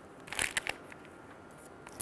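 A few brief crinkling rustles and ticks about half a second in, from a plastic piping bag being squeezed as it pipes cocoa batter onto the cake batter. Between them there is only quiet room tone.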